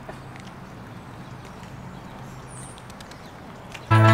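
Outdoor ambience: a steady low hum under a hiss, with a few faint irregular clicks and a short high chirp about halfway through. Music starts suddenly at the very end.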